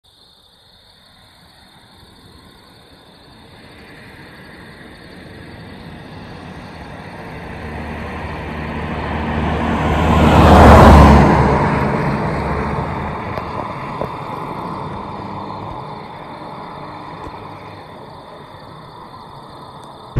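A road vehicle passing by: engine and tyre noise swell slowly to a peak about halfway through, then fade away as it goes. A steady high-pitched tone runs underneath.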